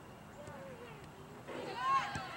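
A high-pitched voice calls out loudly near the end, shrill and wavering, over fainter distant voices from the field.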